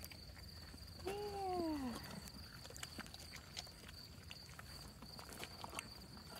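A horse chewing a treat: faint, irregular crunches and clicks, over a steady high-pitched insect trill.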